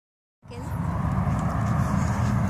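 Plastic garden wagon rolling over a bumpy dirt path, a steady low rumble that starts just under half a second in.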